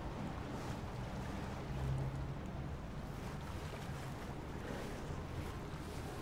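A steady low rumble of background noise with a faint low hum, swelling slightly about two seconds in.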